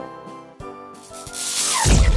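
Cartoon magic-puff sound effect: a swelling hiss with a tone sliding steeply down in pitch, ending in a heavy low boom, over light background music.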